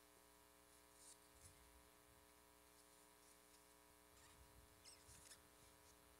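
Near silence over a faint steady room hum, with a few soft rustles and clicks of cardboard and paper as a small gift box is unpacked, the last cluster a little past the middle.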